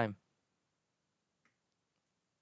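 The last word of a man's sentence, then near silence with one faint, short click about a second and a half in.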